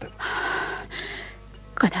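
A performer's long, breathy gasp, followed about two seconds in by the start of a spoken word.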